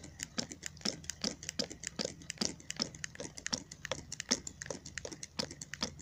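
Homemade magnetic ringbom Stirling engine worked by hand, its flywheel spinning and its mechanism clicking rapidly and unevenly, about six clicks a second. The loose tolerances of the flimsy build let it be driven by hand, but it will not run on its own.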